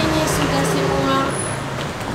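A motor vehicle's engine running steadily, with voices alongside.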